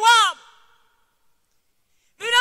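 A woman's voice trails off on a falling pitch within the first half-second, followed by complete silence for more than a second.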